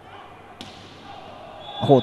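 A volleyball struck once with a sharp smack about half a second in, over the low murmur of a sports hall. A commentator's exclamation starts near the end.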